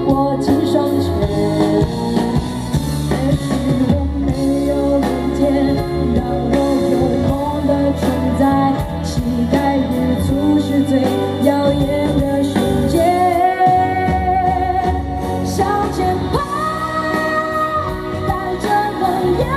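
A woman singing a pop-rock song live into a microphone, backed by a band with drums and electric guitar through a PA system, with long held sung notes in the second half.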